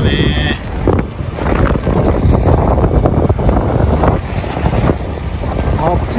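Strong wind buffeting the microphone as a loud, steady low rumble, with sea waves washing against a rocky seawall underneath. A brief high tone sounds right at the start.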